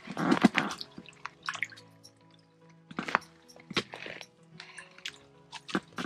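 Water splashing in an ice-fishing hole as a lake trout thrashes at the surface while being grabbed by hand, in short irregular bursts. Soft background music with sustained notes plays throughout.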